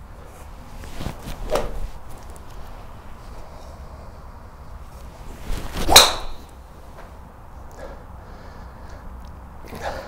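Ping G400 Max driver, fitted with a shorter 3-wood shaft, swung at a teed golf ball. About six seconds in, a rising swish of the club through the air ends in a single loud, sharp crack as the head strikes the ball.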